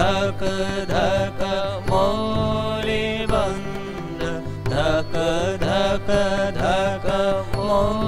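Male voices singing a devotional song to harmonium accompaniment, with a steady harmonium drone underneath and a regular beat of light percussion strikes.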